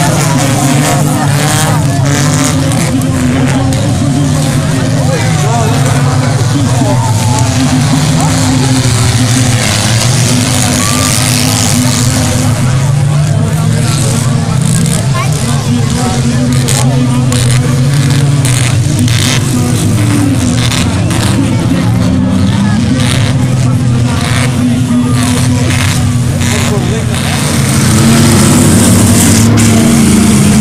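Engines of several autocross race cars running and revving as they lap a dirt track, a mix of steady drone and rising and falling revs, with voices among the spectators. The sound gets louder about two seconds before the end.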